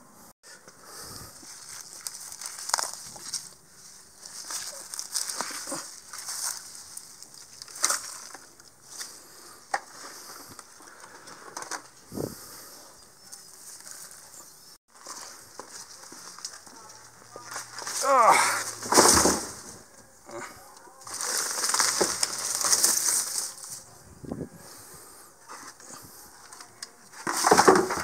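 Weeds and grass being pulled by a gloved hand from packed dirt along a concrete sidewalk: rustling, tearing and scraping that comes in bursts, loudest in the second half.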